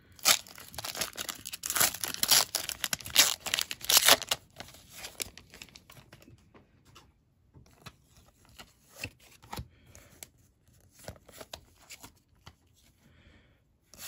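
A foil Pokémon booster pack wrapper being torn open and crinkled, a dense loud crackle for about the first four and a half seconds. Then softer, sparser rustles and clicks as the trading cards are slid out and handled.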